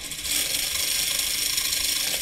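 Homemade series-wound DC motor, its electromagnet stator wired in series with the brushes, running steadily with no load on 40 volts at about 273 RPM.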